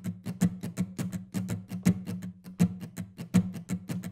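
Steel-string acoustic guitar strummed with a pick in a funky shuffle groove: quick, crisp strokes about five or six a second over sustained low notes, with an accented strum roughly every three-quarters of a second.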